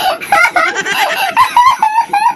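Chicken calls: a quick run of short, pitch-bending clucks, with a few held crowing notes near the end.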